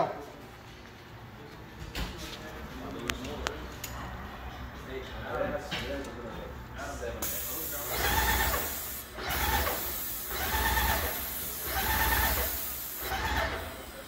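Graco SaniSpray HP 65 airless disinfectant sprayer in use: a steady hiss of liquid from the spray tip starts about seven seconds in and stops shortly before the end, breaking off briefly once. Underneath it, the on-demand pump runs in pulses about once a second as it builds pressure while the trigger is held. The first half is quieter, with a few light clicks.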